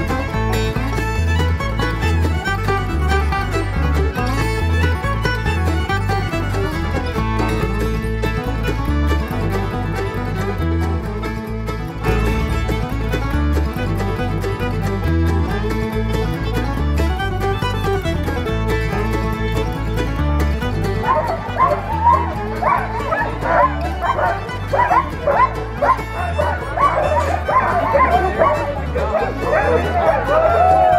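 Background music, joined about two-thirds of the way in by a team of sled dogs barking and yipping all together as they are hitched up to run.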